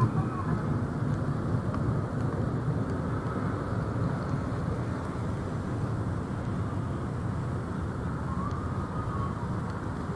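Steady outdoor city ambience: a low rumble of road traffic, with faint voices of passers-by.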